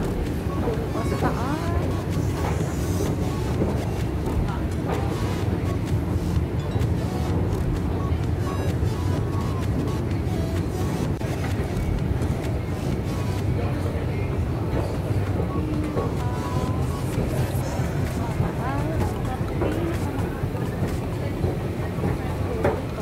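Steady low rumble of a long outdoor escalator running, mixed with city background noise, with people's voices over it.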